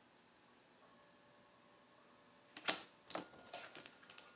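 Tarot cards being handled and shuffled in the hands: three short, crisp bursts of card noise about two and a half seconds in, the first the loudest, after a quiet start.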